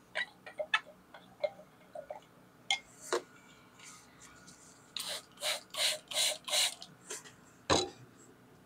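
Light clicks and taps of a glass stirring rod against a glass beaker. A quick run of about five short scraping noises follows, then a single knock near the end.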